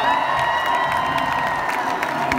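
Large stadium crowd cheering and clapping, with a long held note sounding through most of it.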